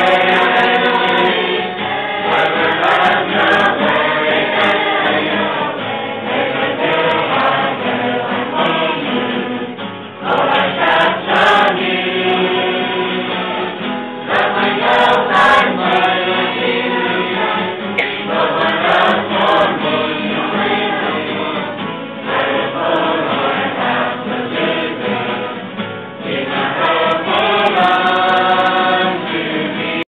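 A large group of young men and women singing a worship song together, with acoustic guitar accompaniment. The singing runs on continuously, with a short breath between phrases about ten seconds in.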